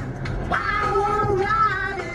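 A high singing voice holding long notes that slide up and down in pitch, with a low steady hum beneath.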